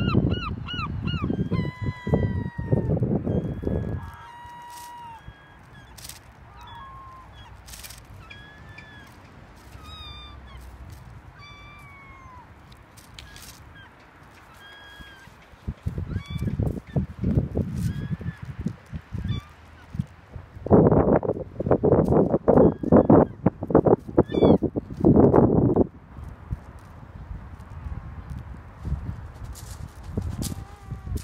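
Short bird calls, many in a row and some gliding in pitch, over a faint steady rush. Loud rough noise comes in the first few seconds and again from about sixteen seconds to about twenty-six seconds in.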